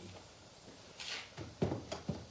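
Handling noise from cleaning tools being put away into a plastic tote: a short scraping rustle about a second in, then a few light knocks and clunks.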